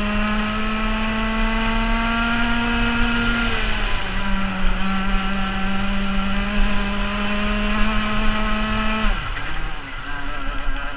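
Rotax Max 125cc single-cylinder two-stroke kart engine at full throttle, its pitch slowly climbing, dipping briefly about a third of the way in, then climbing again. Near the end the pitch falls away sharply as the throttle is lifted for a corner.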